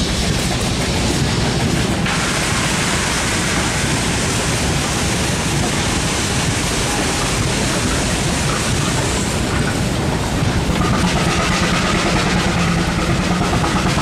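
Steam engines running: a steady low rumble with loud hiss, the hiss strongest through the first half.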